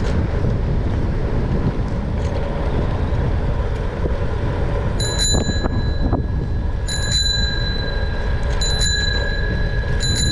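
Bicycle bell rung three times, about five, seven and eight and a half seconds in, each ring sounding on briefly before it fades. A fourth ring starts right at the end. Under it runs a steady low rumble of wind and riding.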